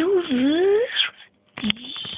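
A person's wordless wailing cry, its pitch sliding up and down for about a second, then a shorter cry near the end.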